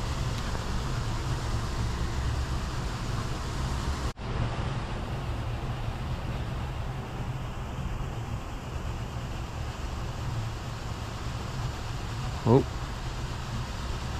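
Steady low outdoor rumble with no distinct events, cut off for an instant about four seconds in. A short exclamation comes near the end.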